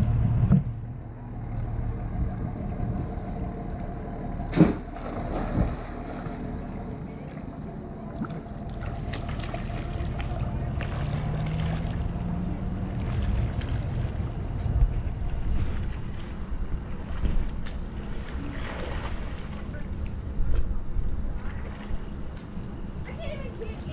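Splashing from a person swimming in a pool, over a steady low rumble and faint hum, with a sharp knock about four and a half seconds in.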